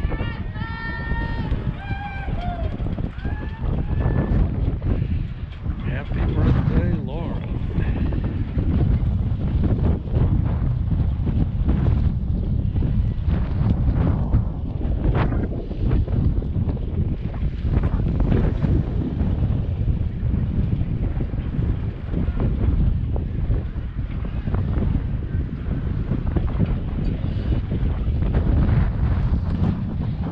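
Wind buffeting the microphone: a loud, continuous low rumble that rises and falls in gusts.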